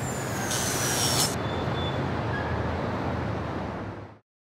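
City street traffic ambience: a steady low rumble of passing vehicles, with a short hiss about half a second in. The sound is cut off suddenly at the end.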